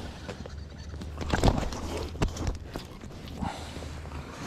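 A small rainbow trout being landed through an ice-fishing hole: scattered knocks and slaps as the line is pulled up by hand and the fish comes onto the ice, over a low steady rumble.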